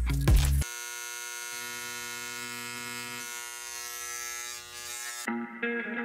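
A handheld electric vibrating engraver pen buzzing as its tip cuts into the back of an iPhone. It cuts off about half a second in, leaving background music: a long held chord, then plucked guitar notes near the end.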